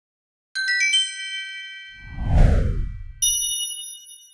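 Channel logo sting: a quick rising run of bell-like chimes, then a deep whoosh sweeping downward about two seconds in, and a final bright chime chord ringing out near the end.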